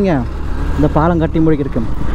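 A man talking over the steady low running of a Yamaha FZ V3 motorcycle's single-cylinder engine, with road and wind noise on the helmet microphone.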